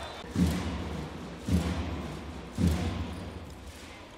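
A volleyball struck three times in a rally, three dull thuds about a second apart.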